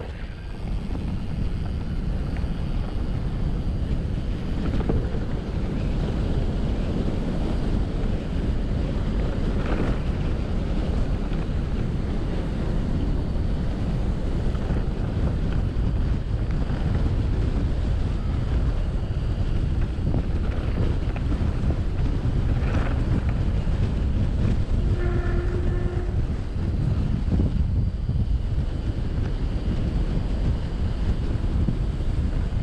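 Wind buffeting the microphone of a camera on a mountain bike riding fast down a grassy track: a steady, loud, low rush that goes on throughout, with the tyres rumbling over the ground underneath.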